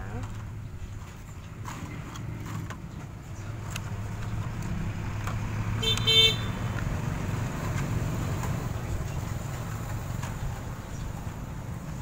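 A road vehicle's engine rumbling past, swelling in the middle, with a short horn toot about six seconds in, the loudest moment. A few light clicks of thin plastic bottle pieces being handled.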